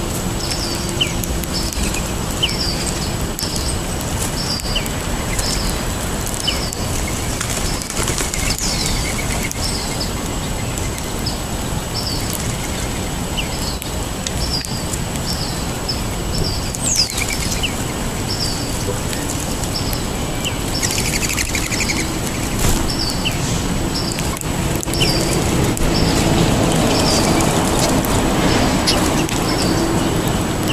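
Small birds in a feeding flock calling, one giving a short high chip about twice a second, with other chirps and occasional wing flutters. A steady low background rumble swells near the end.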